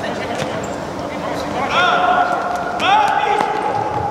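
Futsal play on a hard indoor court: scattered knocks of the ball being kicked and bouncing, sneakers squeaking on the floor about two and three seconds in, and players' voices shouting.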